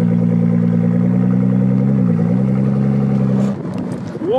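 Nissan GT-R's twin-turbo V6 running steadily at low revs as the car creeps forward, with a brief dip in pitch about two seconds in. It cuts off suddenly about half a second before the end.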